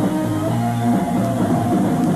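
Live rock band playing, with electric guitar over bass and drums in an instrumental passage.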